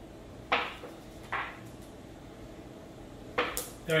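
Glass marbles clicking: a marble flicked from the knuckles knocks against target marbles on a cloth-covered table. A few separate sharp clicks, two of them close together near the end.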